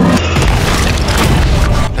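A deep cinematic boom with a sustained low rumble, starting a moment in, under dark music.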